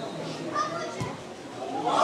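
Spectators talking, children's voices among them. A football is kicked with a single sharp thud about a second in, and the crowd breaks into loud cheering near the end as the free kick goes in for a goal.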